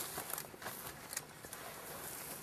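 Faint rustling with a few soft clicks: a person moving about in dry grass close to the camera.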